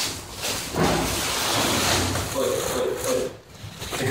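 Large clear plastic sacks rustling and crinkling as they are carried and handled, with voices nearby.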